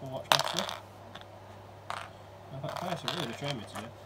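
A small handful of dice thrown for a reroll onto a tabletop wargaming board, rattling and clattering briefly about a third of a second in. A fainter click of dice follows near the two-second mark.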